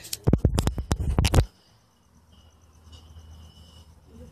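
Phone handling noise: a quick run of loud knocks and rubs in the first second and a half as the phone is swung about, cutting off abruptly. Then it is quiet apart from a faint steady high tone in the second half.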